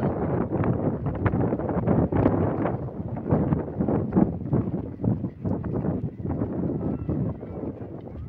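Wind buffeting the microphone: a loud, irregular low rumble with gusts.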